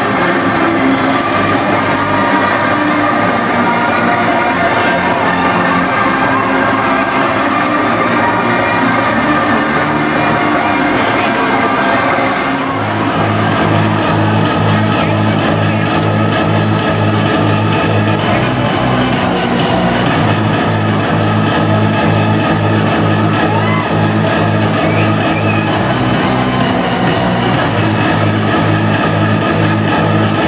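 Hardstyle DJ set playing loud over a large venue's sound system, recorded from within the crowd. After a melodic passage, a steady fast bass beat comes in about twelve seconds in.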